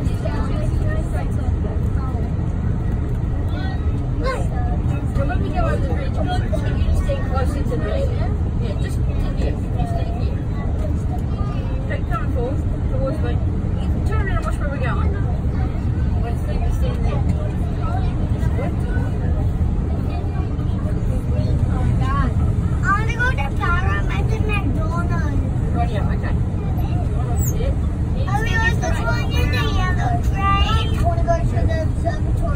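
Cabin sound of a Sydney Metro train running at speed on an elevated track: a steady low rumble, with people talking faintly and a little more clearly about three-quarters of the way through and near the end.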